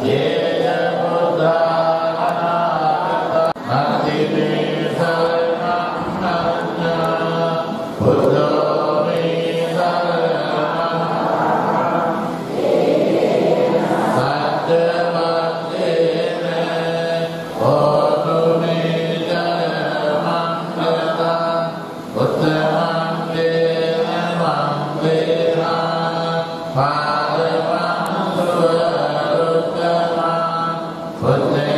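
Buddhist prayers chanted in unison by a large congregation: a steady, near-monotone recitation on a few held pitches, broken into phrases by short pauses for breath every four to five seconds.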